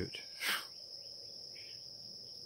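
Crickets chirring steadily in a high, even tone in the background, with a short breath from the man near the microphone about half a second in.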